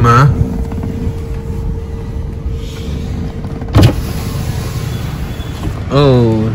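Inside a moving car: steady low road and engine rumble with a faint steady hum, and one sharp thump about four seconds in.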